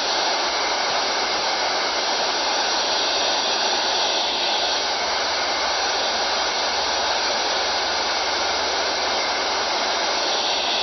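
Steady FM radio static: the unsquelched hiss of a software-defined radio receiver tuned to 29.750 MHz FM, with no voice traffic coming through.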